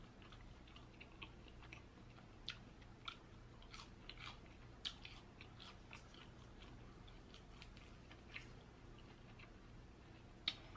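Faint, irregular small crackles and clicks of crispy fried chicken wings being picked apart by hand and eaten.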